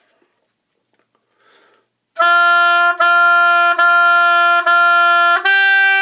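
Oboe playing four separately tongued notes on F, each about three-quarters of a second long, then stepping up to a held G. The notes begin about two seconds in, after a faint breath.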